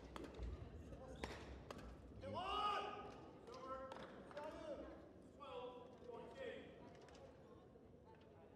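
Indistinct voices in a sports hall, loudest a couple of seconds in and again later, with scattered short knocks and a few low thuds.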